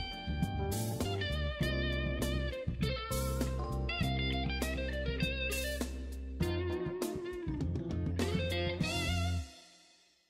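Instrumental background music led by an electric guitar over a steady bass line and percussion, fading out near the end.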